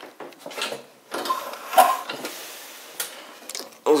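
Foot pedal of a homemade accordion-tuning table being worked: a few wooden knocks and a creak from the spring-loaded, piano-hinged pedal, then a soft hiss that fades away.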